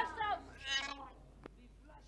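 A woman gagging over a basin: a short, strained, high-pitched vocal sound just under a second in, followed by a single faint click, after the tail of a shouted prayer.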